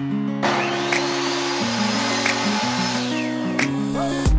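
Ryobi compound miter saw starting up about half a second in, its motor whine rising and holding while it cuts a wood board, then winding down with a falling whine just before the end. Background music plays throughout.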